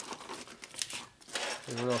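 Plastic parts bag crinkling and rustling as a hand picks it up and digs through it, with small clicks of hardware inside, for about the first second and a half.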